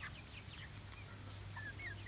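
Chickens in a flock making a few faint, short, high calls, scattered through the moment.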